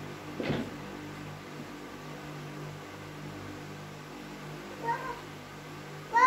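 A young child's short, high, arched vocal call about five seconds in, over a steady low hum. There is a brief breathy noise near the start.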